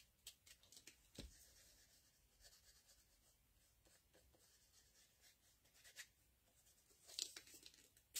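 Faint dabbing and rubbing of an ink blending tool on paper, in scattered light taps with a small cluster about seven seconds in.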